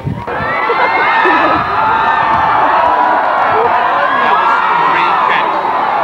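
A large crowd of graduates and spectators cheering and screaming. It breaks out suddenly right at the start and stays loud with many overlapping voices.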